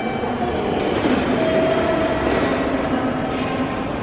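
Busy railway station hall ambience: a steady hubbub with the low rumble of a train running on nearby tracks. A steady whine lasts about a second in the middle.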